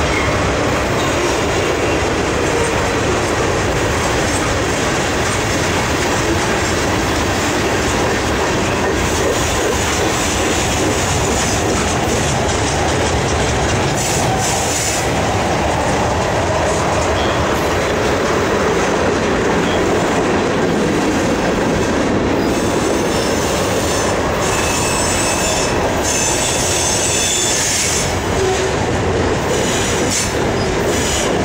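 Freight cars of a long train rolling past close by: a steady, loud noise of steel wheels running on the rail. Thin high wheel squeals come and go in the second half.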